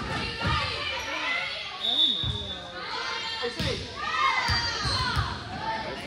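Volleyball rally in a reverberant gym: the ball is struck and thuds several times, with players' and spectators' voices calling and shouting around it. A short, high, steady tone sounds about two seconds in.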